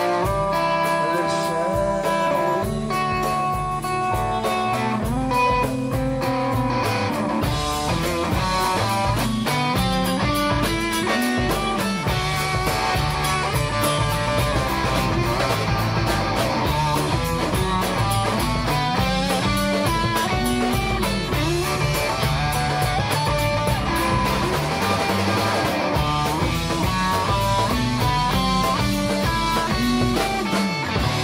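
Live blues-rock band playing, with electric guitar to the fore over electric bass, drums and congas.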